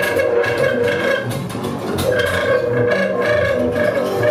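Freely improvised trio music: a tenor saxophone holds long, wavering notes while an archtop acoustic guitar is plucked in short, scattered strokes and a double bass adds low notes.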